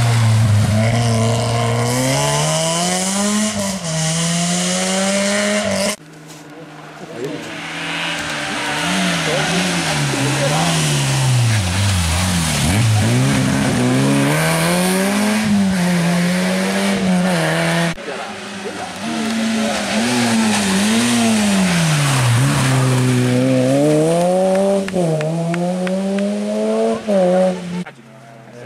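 Citroën Saxo rally car engines pulling hard and dropping back, over and over, as the cars brake, change gear and accelerate through the bends. The pitch rises and falls repeatedly in several separate passes, which break off abruptly about 6 and 18 seconds in.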